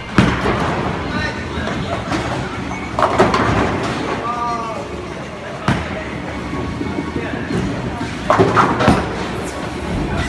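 Bowling alley sounds: a thud as the ball meets the lane, a rolling rumble, and bursts of clattering pins about three seconds in and again near the end, with people's voices among them.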